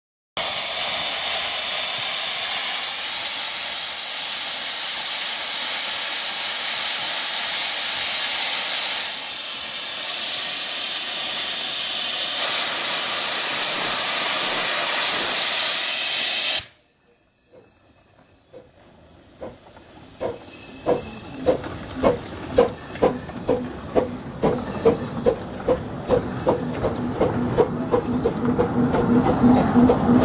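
Steam locomotive Whillan Beck of the 15-inch-gauge Ravenglass & Eskdale Railway: a loud steady hiss of steam venting low at the cylinders for about sixteen seconds, which stops suddenly. After a moment's quiet, the locomotive's exhaust chuffs start, about one and a half beats a second, quickening slightly and growing louder as she moves off.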